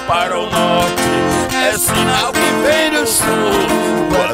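Viola caipira and acoustic guitar playing together in a moda de viola, plucked notes running continuously.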